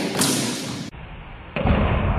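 Thud of a padded practice arrow glancing off a longsword and its shaft striking the swordsman's body, with a sudden loud onset. About a second in the sound cuts abruptly to a duller stretch and then a heavier low thudding.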